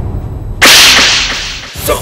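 A dubbed slap sound effect about half a second in: a sudden, loud, whip-like crack that fades away over about a second. Before it the low rumbling tail of a dramatic music sting dies out.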